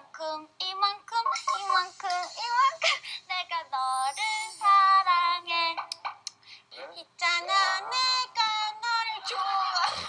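High-pitched, cutesy aegyo voices of K-pop girl-group members, speaking and sing-song singing in short phrases, from a Korean variety-show clip.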